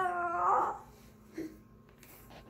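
A young child's high-pitched drawn-out whine or vocalisation, rising slightly and ending within the first second, followed by quiet with one brief soft sound.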